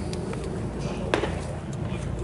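A baseball pitch smacking into the catcher's mitt: one sharp pop about a second in, over steady ballpark background noise.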